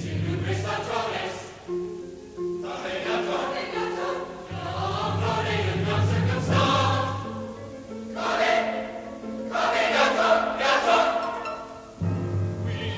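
A choir singing in several phrases with short breaks between them, over a sustained low note underneath.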